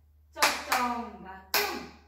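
Three sharp hand claps keeping the beat of a Japanese folk dance: the first two close together, the third about a second later.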